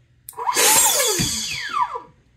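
Electric ducted fan on a 3S battery fired briefly through a makeshift barrel extension: a loud rush of air starts about a quarter second in, with the fan's whine falling in pitch as it spins down, and cuts off near the end.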